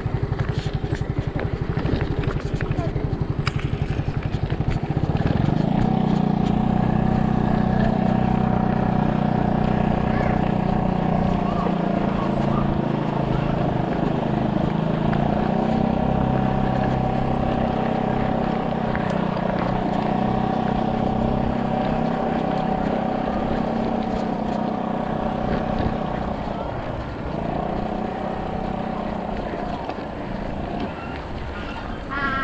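Mountain bike ridden over a gravel road: rough tyre and wind rumble, joined about five seconds in by a steady droning hum that breaks off briefly a few times.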